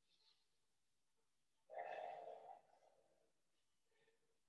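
Near silence, broken about halfway through by one soft breath out from a man, lasting just under a second.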